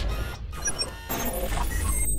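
Synthesized logo-intro sound effects: sweeping swishes and short, high electronic blips over a steady low bass drone.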